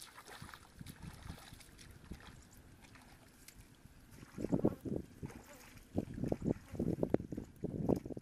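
Bare feet wading through shallow, muddy paddy water: quiet sloshing at first, then louder, irregular splashing steps from about halfway through.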